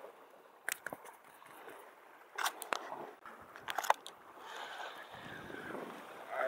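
Close handling noise as a hooked small fish is gripped and unhooked by hand: three clusters of sharp crackling clicks, about a second in, around two and a half seconds and near four seconds, followed by a soft steady hiss.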